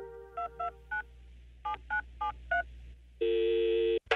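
Telephone keypad tones dialled one at a time, seven short two-note beeps in an uneven rhythm. About three seconds in, a steady line tone sounds, like a call connecting.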